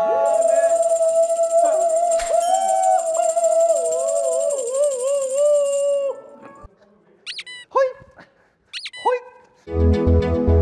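A man singing one long held note into a handheld microphone, wavering with vibrato, for about six seconds before breaking off. Near the end come two short high cries, each falling in pitch.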